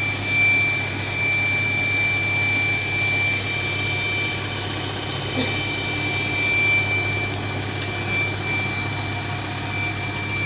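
Hot-air seam sealing machine running: a steady blower rush with a constant high-pitched whine over a low hum.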